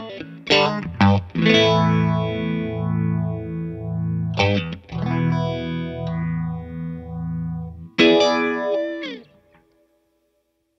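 Electric guitar chords played through an original first-issue MXR Phase 90 phaser, into a Two-Rock and a Deluxe Reverb amp together. The strummed chords ring out with a steady sweeping whoosh from the phaser. A last chord is struck about eight seconds in and dies away near the end.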